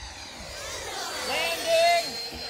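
Electric ducted-fan whine of a Freewing F-22 RC jet coming in to land, falling steadily in pitch. A voice calls out over it in the second half.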